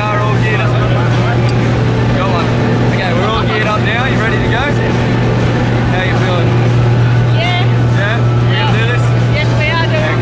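Steady low drone of a small jump plane's engine heard from inside the cabin during the climb, with voices talking over it.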